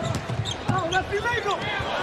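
A basketball being dribbled on a hardwood court, a few short bounces, under voices in the arena.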